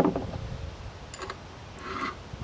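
A knock, then a few light metallic clicks and ticks from handling a Lisle ridge reamer set in a cast-iron cylinder, with a short scrape near the end.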